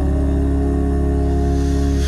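A cappella vocal group holding a steady, sustained chord over a deep bass voice between sung lines.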